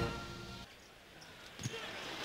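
A music passage fades out in the first moment, leaving faint background noise, and a basketball bounces on the court floor about one and a half seconds in.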